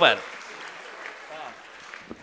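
Audience applauding, dying away toward the end. A voice calls out briefly at the very start, falling in pitch.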